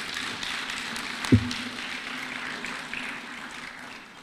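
An audience applauding, a dense patter of clapping that slowly fades. About a second in there is a single loud, low thump, like a microphone being knocked.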